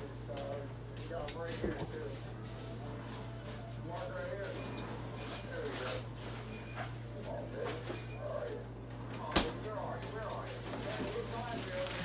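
Faint speech from off the microphone over a steady low hum, with a single sharp knock about nine and a half seconds in.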